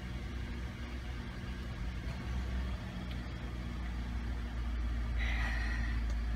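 2013 Ford F-150's engine idling, a steady low hum heard from inside the cab. A faint high tone joins in near the end.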